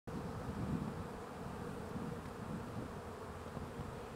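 Many honeybees buzzing around an opened hive, a steady, unbroken hum.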